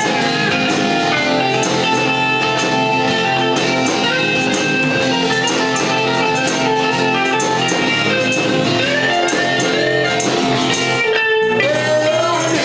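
Live folk-rock band playing an instrumental stretch: strummed acoustic guitar and electric lead guitar over bass and a drum kit keeping a steady beat. The cymbals drop out briefly about a second before the end.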